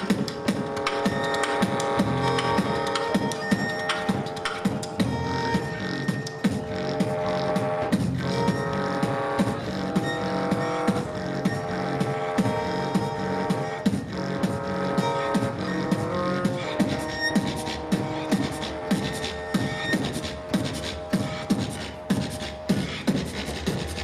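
Live beatboxing into a handheld microphone: a steady rhythm of mouth-made drum sounds, with a violin bowing a slow, sustained melody over it.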